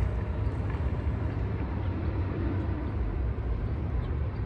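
Gusty wind buffeting the phone's microphone: a steady, churning low rumble with no distinct events.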